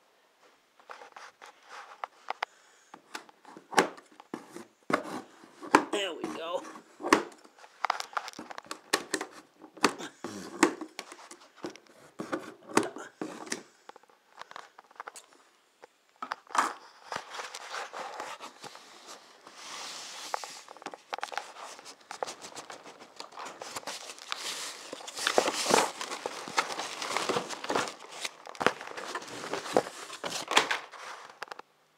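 Boxed window blinds being unpacked: heavy scissors snipping through plastic packing straps, with cardboard scraping and plastic wrap crinkling in irregular bursts of clicks and rustles.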